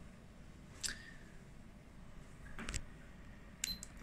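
Quiet room tone with a few faint, short clicks: one about a second in, one near three seconds, and a small cluster just before the end, as a digital multimeter's rotary dial is handled and turned.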